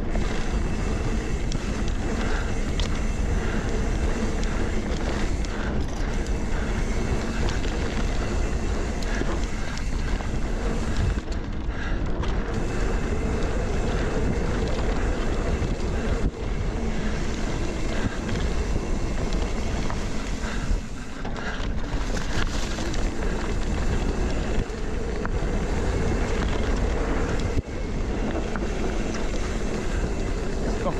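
A mountain bike rolling fast along a dirt forest singletrack: steady wind noise on the microphone over the tyres on the trail, with frequent small knocks and rattles from the bike.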